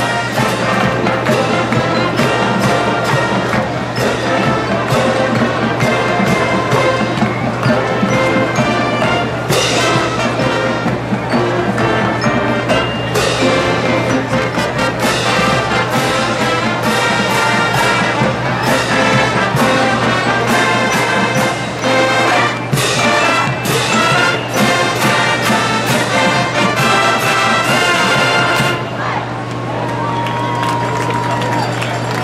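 A college marching band plays a loud piece, full brass over regular drum strokes. The playing drops away shortly before the end.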